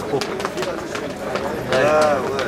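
People talking close to the microphone, with scattered short clicks and knocks.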